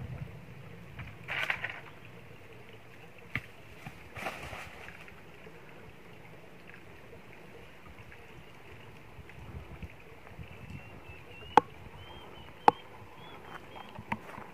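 Rustling and footsteps through dry leaves and undergrowth, then two sharp, loud knocks about a second apart near the end.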